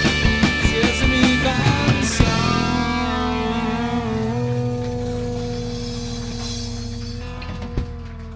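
Live rock band with electric guitar, bass and drum kit playing the last bars of a song: the steady drum beat stops with a final crash about two seconds in, and the last chord rings on and slowly fades.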